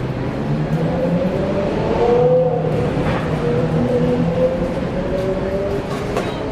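A motor vehicle's engine running close by over steady street noise, loudest about two seconds in.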